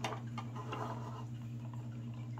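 Light clicks and taps of the plastic cups of a Guerrilla Painter tri brush washer being handled and fitted together, a sharper click at the start, over a steady low hum.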